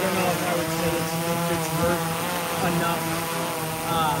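DJI Matrice 4T quadcopter hovering close by on its standard propellers: a steady hum made of several tones, the pitch wavering slightly as the rotors hold the drone in place.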